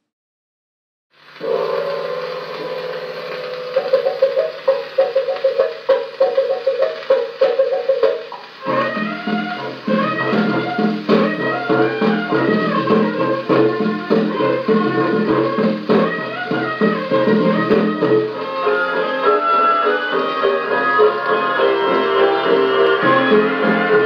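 A 1927 dance-orchestra fox-trot playing from a 78 rpm shellac record on a 1937 HMV Model 721 radiogram, with the narrow, treble-less sound of the old record and set. The music starts about a second in with held chords, and the full band with a steady beat comes in about a third of the way through.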